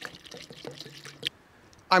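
Pre-mixed two-stroke fuel pouring from a metal can through a plastic funnel into a chainsaw's fuel tank, a faint, irregular trickle.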